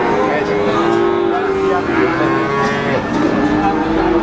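Cattle mooing in long drawn-out calls, one after another and sometimes overlapping, over the steady background noise of a busy livestock market.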